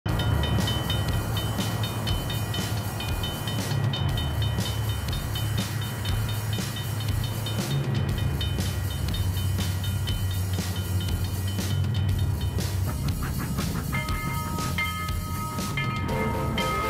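A train running: a steady low rumble with a regular clicking from the rails, with thin steady high tones above it. Pitched musical notes come in about three seconds before the end.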